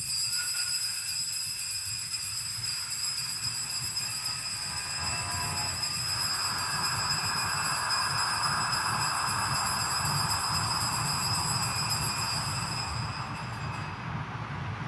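Altar bells ringing continuously at the elevation of the chalice, after the words of consecration: a steady high, bright ringing that fades out near the end.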